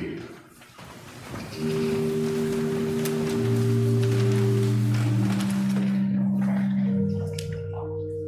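Church organ playing held chords that change every second or two, coming in about a second and a half in, over low voices and movement in the congregation.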